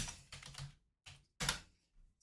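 Typing on a computer keyboard: a few quick runs of keystrokes with short silent pauses between them.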